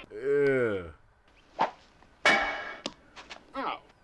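A person's drawn-out vocal cry that rises and falls in pitch for about a second, then, a little over two seconds in, a single sharp whack with a brief ring, followed by a few light clicks and a short bit of voice.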